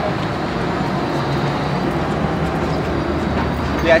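Steady rumble of nearby vehicle traffic with no distinct events, a person's voice starting just before the end.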